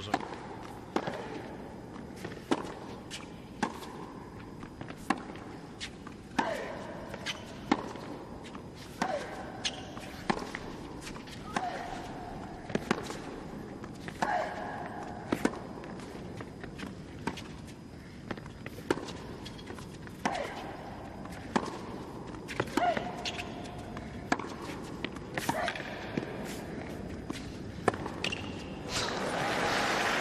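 Tennis ball struck back and forth with racquets in a long rally on a hard court, a sharp hit about every second and a bit, with short squeals between some of the strokes.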